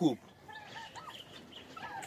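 A few faint, short calls from poultry that bend in pitch, against a quiet background.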